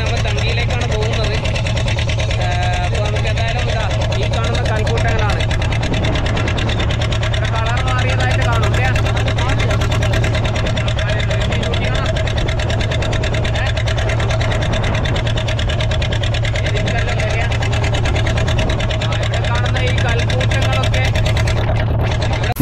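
Boat engine running steadily with a low hum and a fast, even beat, with people's voices talking over it.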